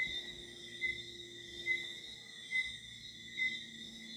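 Night insects outside: a steady high-pitched chirring, with a short chirp repeating a little under once a second.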